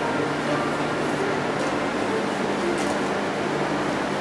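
Steady hum of a cold wine cellar's air-conditioning and cooling system, even and unchanging, with a few faint brief rustles over it.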